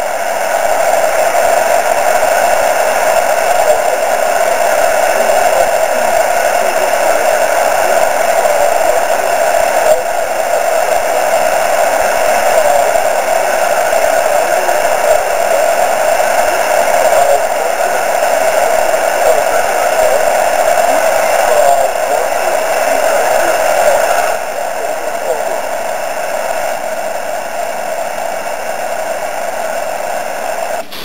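Steady hiss from an amateur radio receiver, a band of noise strongest in the lower middle of the voice range, with no clear signal standing out. It becomes slightly quieter about 24 seconds in.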